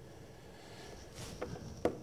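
Faint background hiss, then in the second half a short breath and two small mouth clicks just before a man speaks.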